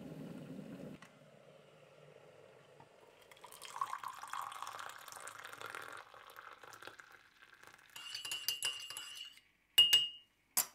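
Hot water poured from a kettle into a ceramic mug, then a teaspoon stirring with small clinks against the mug. The spoon taps the rim sharply once near the end.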